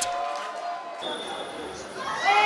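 Football match pitch-side sound: faint distant voices of players and spectators over the open-air background, which changes abruptly about a second in at an edit between shots.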